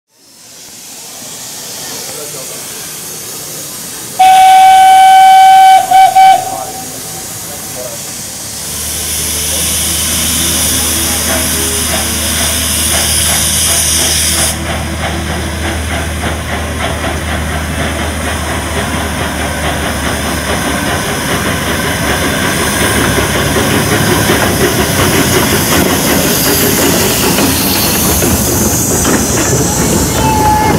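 Narrow-gauge steam locomotive sounding its whistle about four seconds in, one long blast and then two short toots. It then hisses loudly as steam vents from the cylinder drain cocks while it moves off, and its rhythmic running beats grow louder as it comes close.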